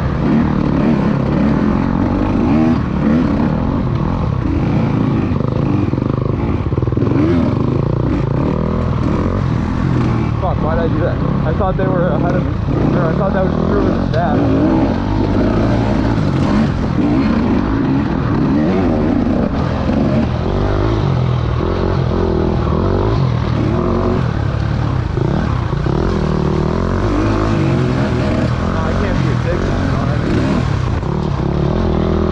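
Small-bore two-stroke enduro dirt bike engine, heard close up from the rider's on-board camera, its pitch rising and falling over and over as the throttle is worked.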